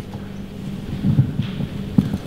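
A pause on a hall's microphone with a steady low electrical hum. There are faint, indistinct low murmurs about a second in, and a sharp click at the very end.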